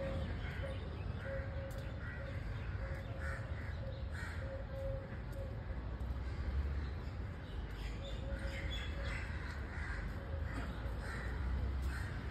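Crows cawing again and again in short calls, over a low steady background rumble.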